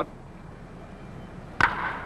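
One sharp crack of a wooden baseball bat meeting a pitched ball about one and a half seconds in, with a brief ring after it: the ball is hit for a line drive. Before it, only a faint steady hiss.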